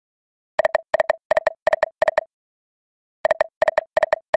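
Video slot machine sound effects: a run of five short, identical electronic beeps about a third of a second apart, one as each of the five reels stops, then after a pause of about a second another run of beeps begins as the next spin's reels stop.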